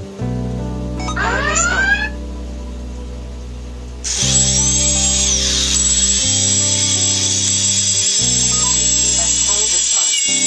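Quadcopter's electric motors, propellers off, spinning under throttle: a short rising whine about a second in, then from about four seconds in a steady high whine that keeps on. Background music with sustained chords plays throughout.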